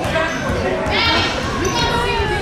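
Indistinct voices echoing in a gymnasium, with one higher voice calling out about a second in, over soft low thuds.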